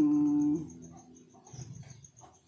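A woman's voice holding one level, drawn-out hum or vowel for about half a second at the start, trailing off the end of her sentence. After it come only faint, small sounds.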